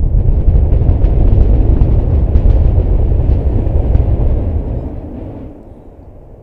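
SpaceX Super Heavy Booster 9's 33 Raptor engines firing in a static fire test: a loud, deep, crackling roar that fades away over the last second or two as the engines shut down.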